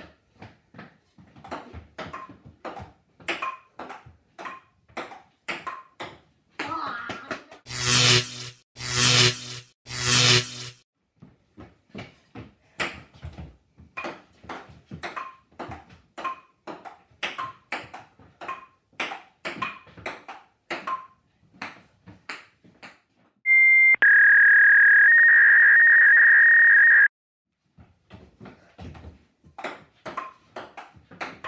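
A table tennis rally: the ball clicking off the table and the paddles in quick, uneven succession, a few hits a second. Three loud bursts of noise come in quick succession about eight seconds in, and a loud steady electronic beep sounds for about three seconds near the end, breaking off the clicks.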